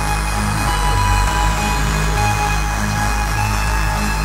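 Hardcore electronic dance track playing a section of sustained low synth bass notes that change pitch about every half second, under steady higher synth tones. A high tone slides down in the first second, and no drum hits stand out.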